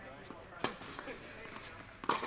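Tennis ball impacts in an indoor court hall: one sharp pop of a ball off a racket or the court about two-thirds of a second in, with a few fainter pops from farther off.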